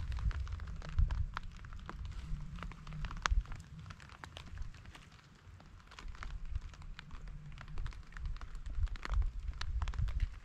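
A light sprinkle of rain: scattered drops ticking irregularly, over a steady low rumble.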